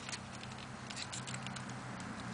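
Small irregular clicks and light rattling from a Fuzion kick scooter's wheels and frame as it is tipped back and pivoted on gritty asphalt, over a steady low hum.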